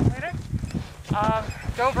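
A person's voice speaking in short phrases, with wind rumbling against the microphone underneath.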